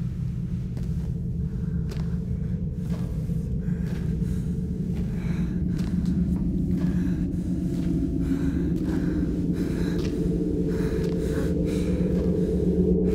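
A low, steady rumbling drone that slowly swells, with short breaths or gasps and scattered faint clicks over it.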